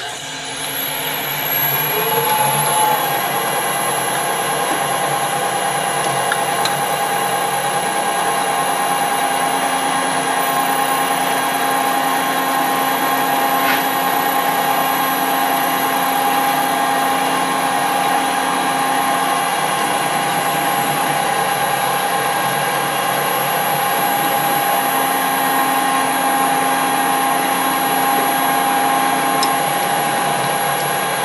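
Colchester Bantam metal lathe starting up, its gear whine rising in pitch over the first two seconds or so, then running steadily at speed with a constant high gear whine.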